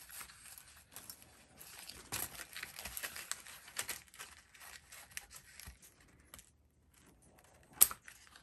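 Scissors snipping through a stiff glitter ribbon bow while it is handled, crinkling and rustling in short scattered bursts. A sharp click comes near the end.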